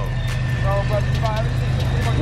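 Steady low rumble of a freight train rolling past, with faint voices in the background.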